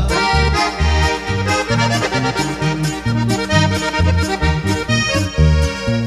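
Norteño accordion playing an instrumental break with no singing, over a bass line that moves in a regular bouncing pattern and a steady rhythmic accompaniment.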